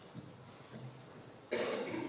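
A person coughs near the end, a short loud burst over a quiet room.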